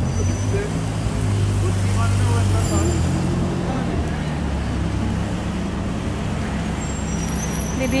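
City road traffic with buses and vans driving past close by: a steady low engine drone, loudest about one to three seconds in.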